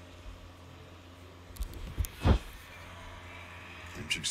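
A few sharp thuds in the cage during the fight, the loudest a little past two seconds in, over a steady low hum.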